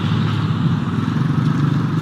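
Steady, loud street noise with a low engine rumble, recorded on a handheld phone.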